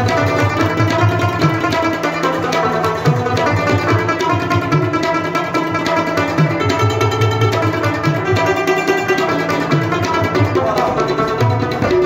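Afghan rabab plucked in a quick, continuous run of notes, with harmonium and tabla accompaniment.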